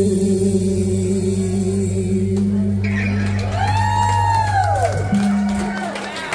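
Live rock band with guitars and bass holding the final chord of a song, while a voice sings one last long note that rises and falls over it; the music stops about five seconds in.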